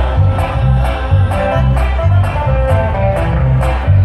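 Live band playing: plucked guitars over a moving bass line, with steady cymbal strokes from a drum kit keeping the beat.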